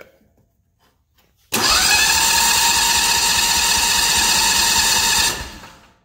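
Predator 670 V-twin engine turned over by its electric starter from the key switch for about four seconds: a whine that rises quickly, then holds steady before stopping.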